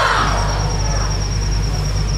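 A pause between sung phrases heard through a stage sound system: the last sung note trails off at the very start, leaving a steady low hum and hiss with a thin, steady high-pitched tone.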